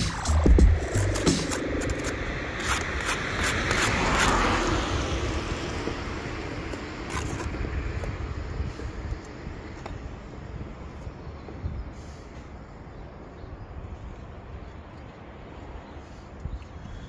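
A vehicle passing on the street, its noise swelling to a peak about four seconds in and then slowly fading. A few sharp taps, likely a steel brick trowel on brick, come right at the start.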